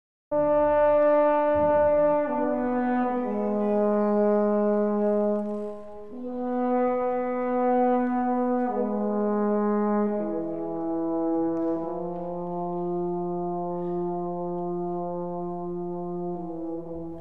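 French horn playing a slow phrase of long held notes, stepping down, up and down again, and ending on a low note held for about six seconds.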